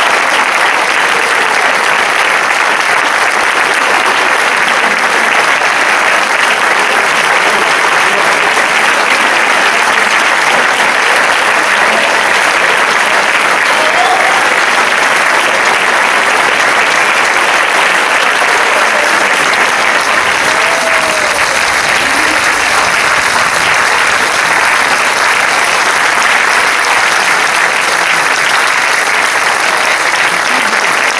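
An audience applauding steadily and loudly throughout, a long, unbroken round of clapping.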